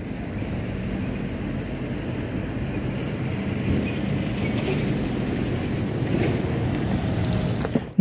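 Steady low rumbling outdoor noise picked up by a phone's microphone, with a faint high-pitched steady tone above it.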